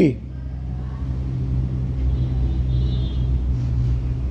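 A steady low hum and rumble of background noise, with a faint high tone in the middle.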